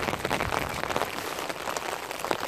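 Heavy rain falling on an umbrella held just over the microphone: an even hiss made of many small, quick drop hits.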